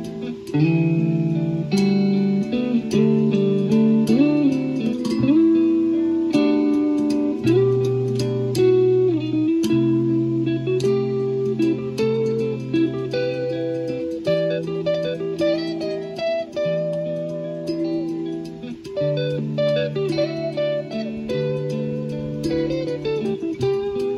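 Guitar playing: a line of plucked notes over held low notes, with some notes bent or slid in pitch.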